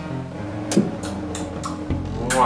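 Background music with a steady low note, with a few short sharp clicks over it, the loudest about three-quarters of a second in.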